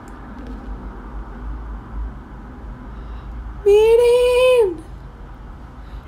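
A single drawn-out, high vocal sound like a whine or sung note, held for about a second a little past the middle and dropping in pitch as it ends. Before it there is only faint low room noise.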